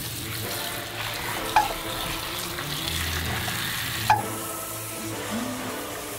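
Water spraying from a handheld shower head, rinsing soap lather off a small dog in a bathtub: a steady hiss of spray, with a short knock about 1.5 s in and another about 4 s in, after which the hiss is softer.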